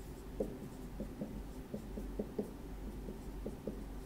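Dry-erase marker writing on a whiteboard: a quick, irregular series of short strokes and taps as characters are drawn.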